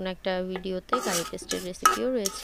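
A spatula stirring and scraping curry paste being sautéed in a wok, with a sharp clink near the end, under a voice speaking.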